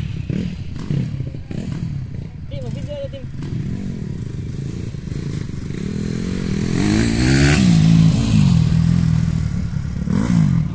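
Dirt bike engines revving and easing off as the bikes ride around, growing louder from about seven seconds in as one bike comes up close.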